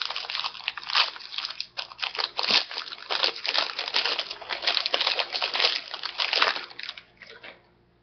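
Plastic wrapper of a 2015 Topps Series 1 jumbo card pack crinkling as it is torn open and pulled off the cards. The dense crackling dies away about seven seconds in.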